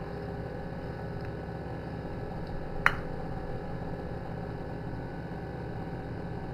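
A single sharp crack about three seconds in, an eggshell being broken open against a bowl, over a steady low hum.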